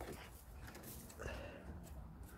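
Domestic hens clucking faintly, a few short calls over a low steady rumble.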